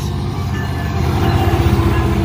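Union Pacific SD70ACe and Kansas City Southern diesel-electric locomotives passing close by: a deep, steady engine rumble mixed with wheel-on-rail noise, growing louder about a second in as the units go past.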